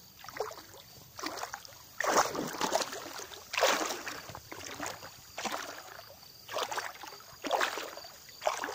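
Water sloshing and splashing close to the microphone in repeated surges about once a second, the strokes of a person swimming.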